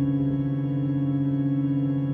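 Ambient electronic music: a drone of several steady held tones with no beat or attack.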